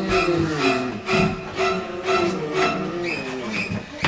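Background music with a steady beat of about two strokes a second under a melody.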